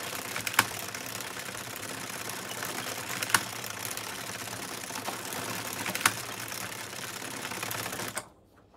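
Addi Express circular knitting machine being hand-cranked: its plastic needles and cam carriage clatter steadily as they run round, with three sharper clicks evenly spaced through the run.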